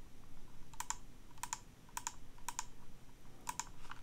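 Five quick presses on a computer keyboard. Each press is a sharp double click, and they come about half a second to a second apart.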